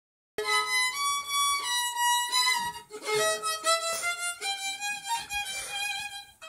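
Violin bowed solo, starting about half a second in: a melody of held notes, each changing pitch every half second or so, some with a slight vibrato.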